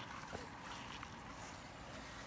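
Faint outdoor background noise with a couple of small clicks.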